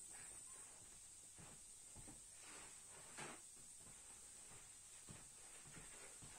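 Near silence: room tone with a steady faint high hiss, a few soft faint knocks, and a brief rustle about three seconds in.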